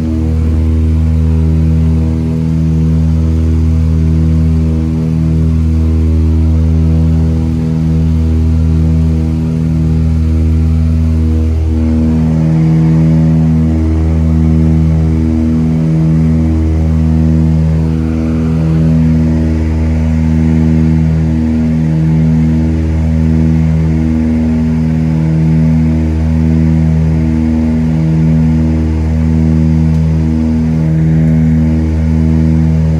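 Britten-Norman Islander's twin piston engines and propellers droning steadily, heard from inside the cabin. Their sound swells and fades in a slow throb about every second and a half, the beat of two engines running slightly out of sync.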